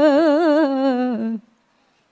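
A woman's Qur'an recitation in the melodic tilawah style, holding one long drawn-out vowel with a rapid, even vibrato that slowly sinks in pitch, then breaking off about one and a half seconds in.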